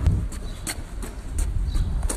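Outdoor street noise picked up by a handheld phone's microphone: a steady low rumble from wind and handling, with a run of short light clicks about three a second that pause briefly midway.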